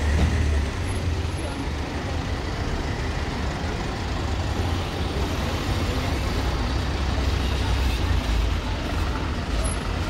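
City minibuses idling and pulling away close by, a steady low engine rumble over general street traffic noise, with voices in the background.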